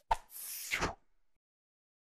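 Sound effects from an animated subscribe end-screen: a sharp click as the cursor presses the Share button, then a short rushing swish that stops about a second in.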